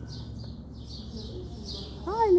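Bird chirping: short high chirps repeating about three times a second over a steady low hum.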